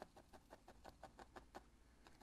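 Felting needle stabbing repeatedly through wool fibre into the felting pad: faint, soft pokes at about five a second.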